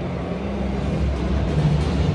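Ambience of a near-empty football stadium: a steady low rumble, with faint music over the public-address system.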